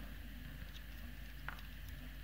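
Faint handling of a small plastic smartwatch charging clip and its cable, with one light click about one and a half seconds in.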